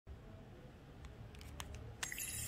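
Sony Ericsson W300i clamshell phone being handled and flipped open: a few light plastic clicks in the second second, ending in a sharper snap of the hinge as it opens.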